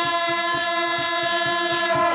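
Procession music: a horn holds one long, steady note over a fast, even drum beat.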